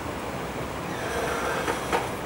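Chalk drawing a curve on a blackboard, squeaking in a thin high tone during the second half, with two sharp taps of the chalk near the end, over steady room noise.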